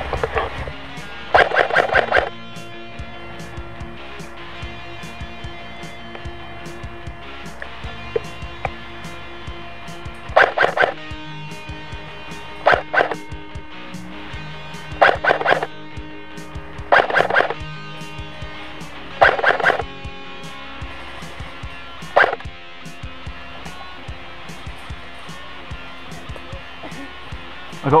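Short bursts of automatic fire from an HK416D airsoft electric rifle, each a rapid rattle under a second long. There is one burst about a second in, then a string of bursts every two to three seconds through the middle. Background music with steady tones plays throughout.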